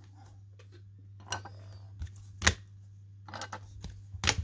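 Hard plastic card holders being handled on a tabletop: a few light clicks and knocks, the sharpest about two and a half seconds in, with some small ticks near the end.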